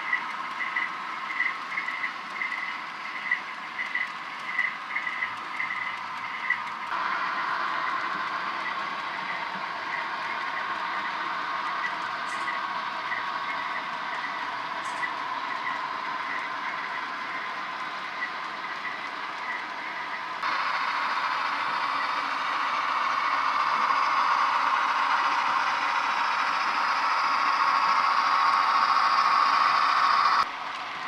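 HO scale model freight train rolling along the track: a rhythmic light clicking at first, then a steady whirring rumble of wheels and motor. It changes abruptly twice and is loudest near the end.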